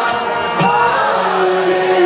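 Kirtan music: a devotional mantra chanted to instrumental accompaniment, with a long held tone from about halfway through and a few sharp percussion strikes.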